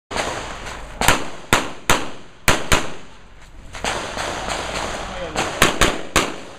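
Pistol shots fired in quick succession during a practical-shooting stage: about seven sharp reports, some in quick pairs, with a pause of nearly three seconds between the first group and the last pair. Each shot rings briefly off the range.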